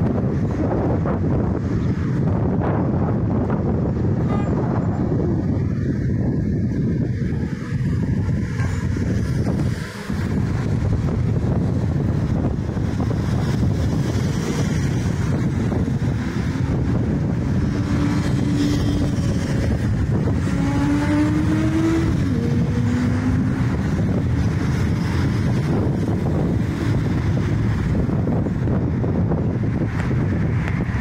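Steady road traffic: cars, vans and buses passing on a multi-lane road below, with wind on the microphone. About two-thirds of the way through, one vehicle's engine note stands out, rising and then dropping in pitch as it accelerates.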